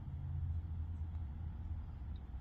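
A low, steady rumble that swells slightly in the first second.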